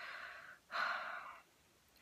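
A woman's two audible breaths, each under a second, the second one louder.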